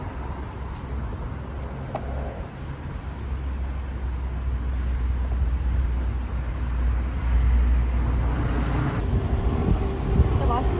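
Outdoor street ambience dominated by a low rumble of road traffic, which swells over several seconds and is loudest near the end.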